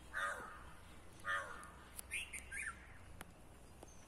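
Crows cawing: two harsh caws about a second apart, followed by a few short, higher chirps.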